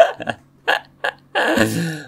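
A man laughing in a string of short breathy bursts, the first one the loudest and a longer, voiced one near the end.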